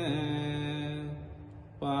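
Pali pirith chanting: the voice holds the last syllable of 'etena saccavajjena' on one long steady note that slowly fades. The next words, 'pātu taṃ ratanattayaṃ', begin just before the end.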